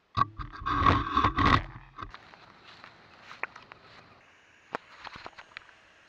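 Action camera being handled: about two seconds of loud scraping and rubbing right against the microphone with many sharp clicks, then quieter scattered clicks and taps.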